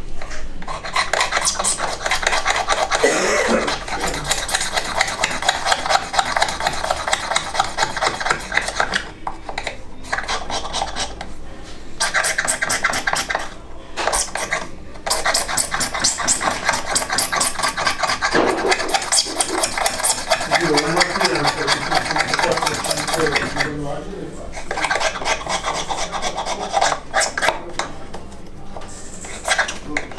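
Small hand file being worked by hand in quick back-and-forth strokes on a pipe part clamped in a bench vise, with a few brief pauses between runs of strokes.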